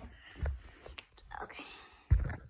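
Rubbing and soft thumps from a handheld phone being moved around, with a short click about a second in and a breathy whisper in the second half.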